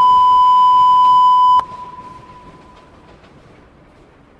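A loud, steady electronic beep near 1 kHz that cuts off abruptly about a second and a half in, leaving a brief fading echo and then only faint background hiss.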